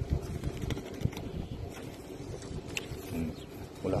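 A banknote fed into a payment kiosk's bill acceptor and drawn in, with a few faint clicks over steady outdoor background noise.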